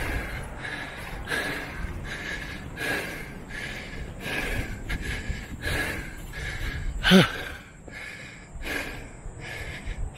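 A man puffing hard from climbing a steep hill on foot: quick, regular breaths in and out, with one short voiced exhalation falling in pitch about seven seconds in.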